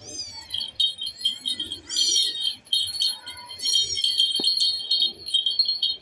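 Small kittens mewing in short, high, rising-and-falling squeaks every second or two, over a steady high ringing tone.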